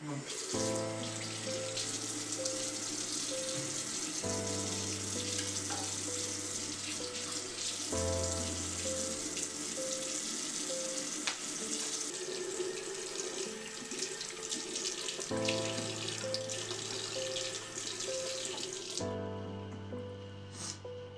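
Water running steadily from a bathroom sink tap into the basin. It starts right at the beginning and stops about a second before the end, under background music of slow sustained chords with a short note repeating.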